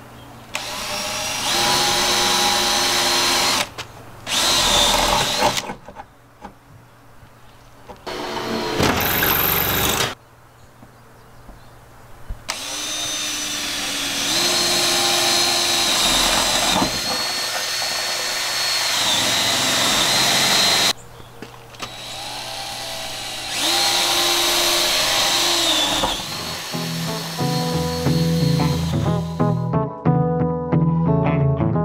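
Cordless drill boring holes through the steel side panel of a school bus, in about five separate runs. The motor whine rises and levels off as each hole is cut. Music comes in near the end.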